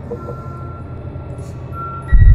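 Low, steady rumbling drone from a horror trailer's soundtrack, with a faint thin high tone coming in about halfway through.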